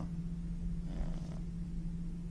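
Steady low hum and rumble of room background noise in a pause between voices, with a faint soft sound about a second in.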